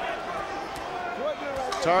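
Steady murmur of an arena crowd at a boxing match, with a dull thud or two of gloved punches landing.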